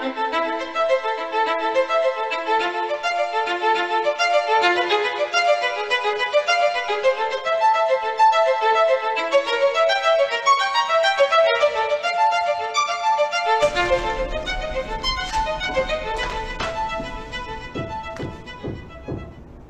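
Violin playing a quick melodic line of short, clearly separated notes. About fourteen seconds in, a low steady hum comes in under it, with a few light clicks, and the music fades toward the end.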